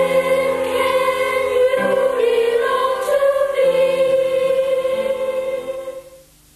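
Boys' choir of unbroken treble voices singing, the melody held on long sustained notes while the lower parts change every couple of seconds.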